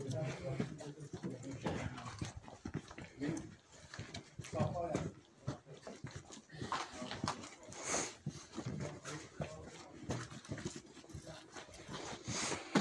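Indistinct talking with a dog barking, and scattered short knocks.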